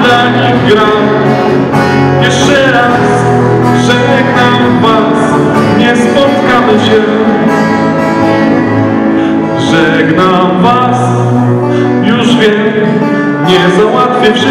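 A live band playing a song: acoustic guitar with backing instruments, and a male voice singing into a microphone.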